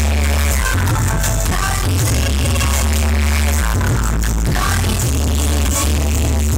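Instrumental dance music played loud, with a heavy, sustained bass line and no voice.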